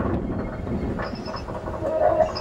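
Experimental electro-acoustic improvisation on sound objects and electronics: a dense, low, noisy texture with short high tones about a second in and again at the end.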